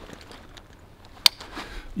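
Backpack hip-belt buckle snapping shut: a single sharp click about a second in, amid faint handling noise of the straps.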